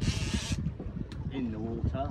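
A brief hiss in the first half second, then a short drawn-out vocal sound from a man about one and a half seconds in, over steady wind and sea rumble on a small boat's deck during a shark fight on rod and reel.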